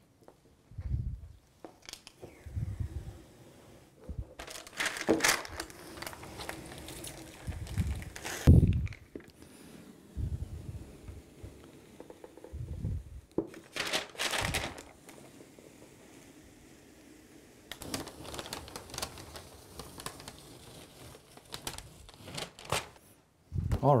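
Protective plastic film being peeled off and crinkling, in irregular bursts with quieter handling noise between.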